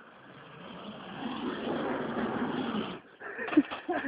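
Rough sliding hiss of shoes on a ski jump's plastic inrun track, growing louder as the slider picks up speed and cutting off suddenly about three seconds in. A few short knocks follow near the end.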